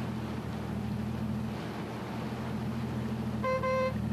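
Automatic bus wash running: a steady mechanical hum with a hiss over it. About three and a half seconds in, a single short horn beep sounds.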